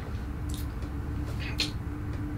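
Wet mouth and lip sounds as a sip of apple liqueur is tasted: a few short smacks, about half a second in, around a second and a half and just after the end, over a steady low room hum.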